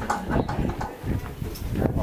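A horse eating hay at close range: irregular crunching and rustling with a few short knocks.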